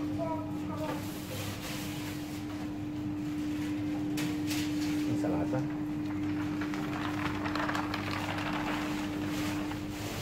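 Supermarket ambience: a steady hum under faint background voices, with rustling and handling noise from moving through the aisles.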